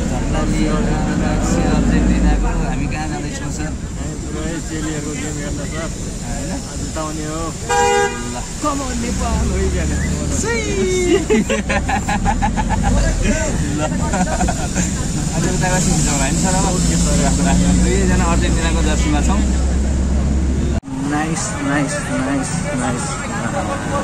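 Engine and road rumble inside a moving van, with a vehicle horn honking briefly about a third of the way in and voices talking over it. Near the end the sound cuts to busy street traffic.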